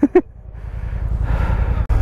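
BMW F 850 GS Adventure's parallel-twin engine running under way, mixed with wind and road noise that builds up about half a second in. A short dropout comes near the end, after which the low engine drone is steadier.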